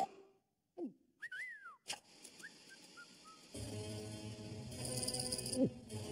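Cartoon soundtrack. After a brief hush come a few whistle-like sound effects: a falling glide, then a tone that rises and falls, a sharp click and a few short chirps. Background music comes in a little past halfway, with another downward glide near the end.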